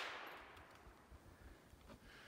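The echo of a gunshot fired at a treed raccoon dies away over about half a second, followed by near silence.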